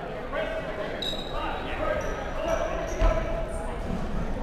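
Players calling out indistinctly in a reverberant sports hall, with short high squeaks of shoes on the wooden court and a single dodgeball thump about three seconds in.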